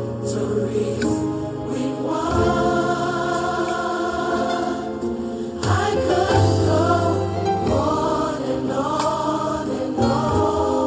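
Choral music: a choir singing long held notes in a church style.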